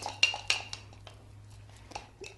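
A metal spoon clinking against a small glass cup as it stirs a thick oatmeal paste: several light clinks in the first second, then a pause and one more clink near the end.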